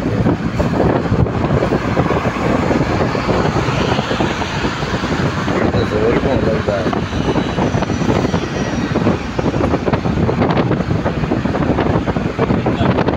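Steady wind and road noise of a vehicle travelling at speed on a motorway, with wind on the microphone.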